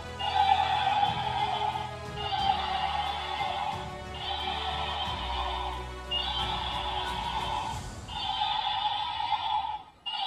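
Battery-powered walking toy dragon's sound chip playing its recorded roar over and over, about one call every two seconds with short gaps between, as the toy walks along.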